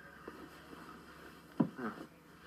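A man's short startled vocal cry about one and a half seconds in: a sharp start, then a falling pitch. Before it there is only faint room tone.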